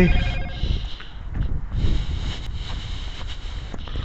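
Wind noise buffeting a body-worn camera's microphone during a walk on a snowy sidewalk, with faint footsteps crunching in the snow.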